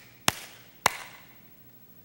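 A man's hands clapping twice, two sharp claps about half a second apart, each with a brief room echo.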